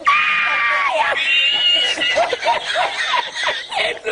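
A person laughing uncontrollably: two long high-pitched squealing laughs in the first two seconds, then a run of quick short laughs, about three or four a second.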